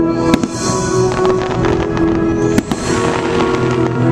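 Aerial fireworks bursting over the show's music soundtrack: two sharp bangs, one just after the start and one a little past halfway, each followed by a hiss of crackling stars.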